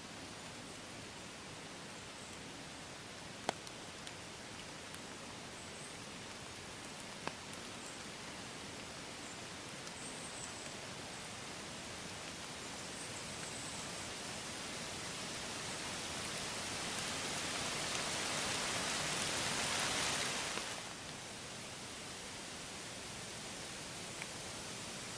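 A steady woodland hiss with a few faint ticks, likely a gray squirrel moving through dry fallen leaves. A rushing noise slowly swells through the middle and cuts off suddenly a few seconds before the end.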